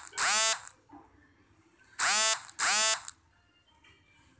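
Smartphone vibrating for incoming WhatsApp notifications: a double buzz at the start and another double buzz about two seconds in, each buzz about half a second long.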